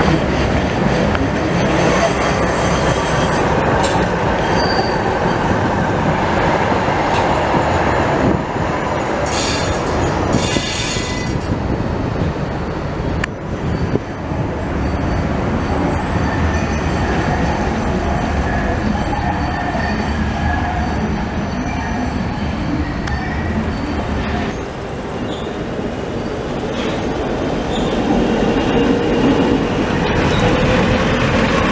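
Budapest trams, including old Ganz UV cars, rolling past on the rails, with steady running noise and wheel squeal on the curved track. A bright, high-pitched squeal stands out about nine to eleven seconds in, and a slowly rising whine comes in near the end as a tram passes close by.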